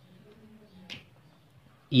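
A single short click about halfway through an otherwise quiet stretch with a faint low hum; a man's voice starts right at the end.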